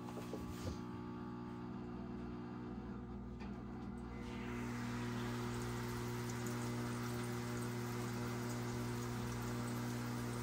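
Air stone bubbling in a hydroponic reservoir, aerating the water: a light fizz that swells into steady, fuller bubbling about four seconds in. A steady electric hum runs underneath.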